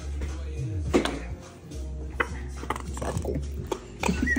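A plastic squeeze bottle of mayonnaise being squeezed, its valve giving several short sputtering squirts and clicks as the mayo comes out.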